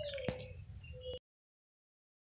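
Background ambience with a steady high-pitched pulsing trill and one faint click, cut off abruptly into silence a little over a second in.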